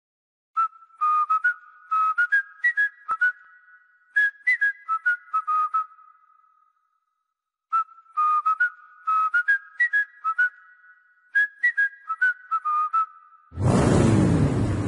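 Intro music: a tune of short, high notes, whistled, played as one phrase and then repeated after a pause of about two seconds. Half a second before the end, a loud, full sound with a falling sweep comes in.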